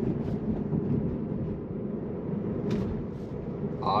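Road and tyre noise heard inside a Tesla's cabin while it drives at about 40 mph, a steady low rumble, with one brief click a little after halfway.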